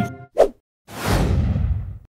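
Editing whoosh sound effect: a brief swish about half a second in, then a loud whoosh that starts bright and sinks in pitch over a low rumble, cut off sharply at the end.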